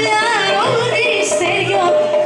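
Live Greek folk band music, loud and steady, its lead melody winding up and down with quick ornaments over a steady backing.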